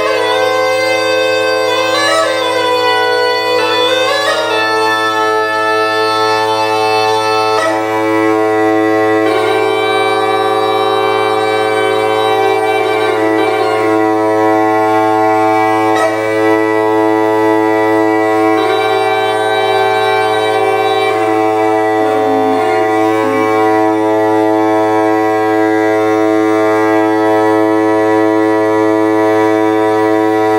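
Greek bagpipe playing a reedy melody over a steady low drone, with quick ornamented runs in the first few seconds, then longer held notes.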